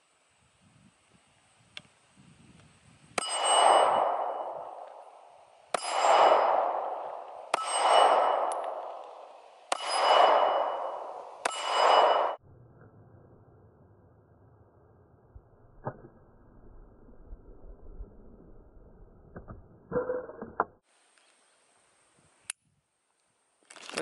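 Five pistol shots at an unhurried pace over about eight seconds, each followed by a ringing tail lasting more than a second; the magazine runs empty and the slide locks back. A few faint clicks follow later.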